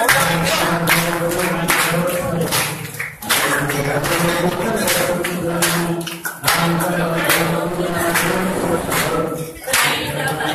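A group of men singing a devotional chant together, kept in time by rhythmic handclaps about two to three a second. The singing dips briefly a few times.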